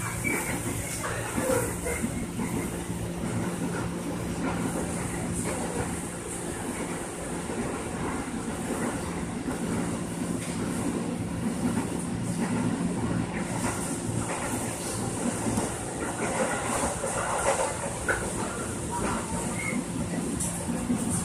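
Interior of an electric commuter train running along the line: steady rumble of the wheels on the rails under a constant low hum.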